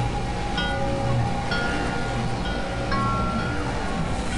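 Experimental electronic synthesizer music: a handful of scattered chime-like bell tones ring out over a dense, noisy low drone.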